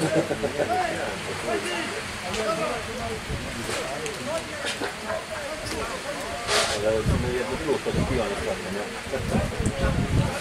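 Indistinct voices of spectators and players talking around an outdoor football pitch, with low gusts of wind buffeting the microphone in the second half and a brief hiss a little past halfway.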